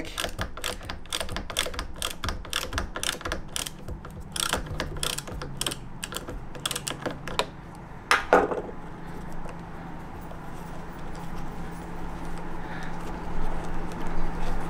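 Rapid light clicking as the nut on an Evolve GTR electric skateboard's motor-cable connector is turned by hand to undo it, with one louder clack a little after eight seconds in, then quieter handling.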